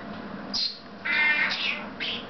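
Pet parrots calling: a short high squeak about half a second in, then a longer pitched call about a second in, followed at once by another high chirp.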